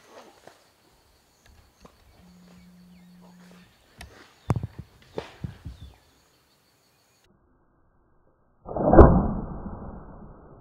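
Scattered light clicks and knocks of bow gear being handled. Then, near the end, a bow shot at a wild hog: one sudden loud thump that dies away over about a second.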